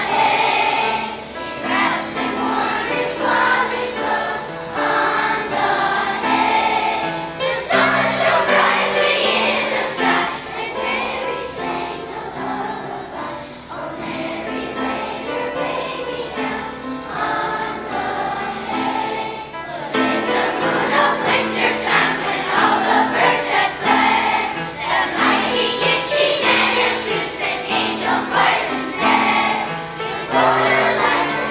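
Children's choir of young elementary-school pupils singing together, the singing getting louder about two-thirds of the way through.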